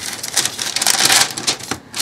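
Sheet of parchment paper rustling and crinkling under pressing, smoothing hands, a dense run of fine crackles lasting about a second and a half.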